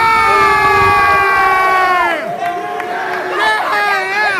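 A crowd cheering, led by one loud, high-pitched yell held for about two seconds that slides down and breaks off. More shouts and whoops follow near the end.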